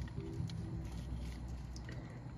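Faint handling noise from a plastic compact film camera being turned over in the hands, with a soft click about half a second in, over a low room hum.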